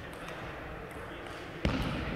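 A single heavy thud near the end, with a short echo from the large hall, over faint murmuring voices and room noise.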